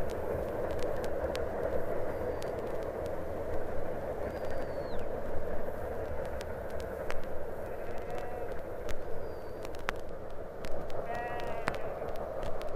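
Lineside steam-railway recording played from a vinyl LP: a steady rushing noise under frequent record-surface clicks and crackle, with short bleating animal calls about two-thirds of the way in and again near the end.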